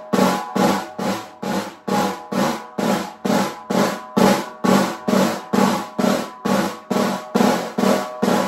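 Snare drum played with wooden sticks in alternating single press (buzz) strokes: each stick is pressed into the head so it rebounds several times, giving an even series of separate buzzing hits, about two and a half a second. The strokes are still spaced apart, the practice stage before they are overlapped into a smooth press roll.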